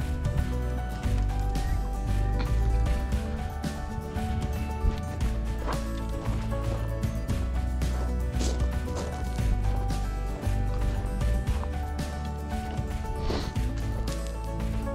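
Background music with a deep bass line that shifts every second or two, held tones above it, and a steady beat of light percussion.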